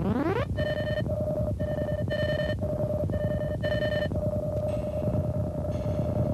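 Electronic music from a computer-controlled analog studio synthesizer: a fast upward pitch glide, then a steady held tone with five short, higher, bell-like beeps laid over it before the tone carries on alone.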